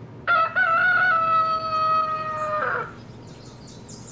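Rooster crowing: one long cock-a-doodle-doo, a short rising start then a long held note that falls off at the end, about two and a half seconds.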